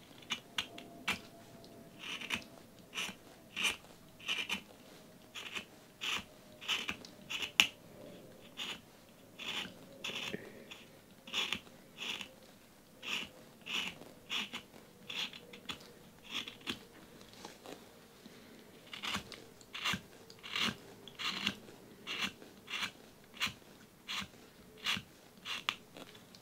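Craft knife shaving the wood of a Holbein soft white pencil by hand: a run of short, crisp scraping strokes, about one and a half a second, as wood flakes are carved off towards the lead. There is a short pause about two thirds of the way through before the strokes resume.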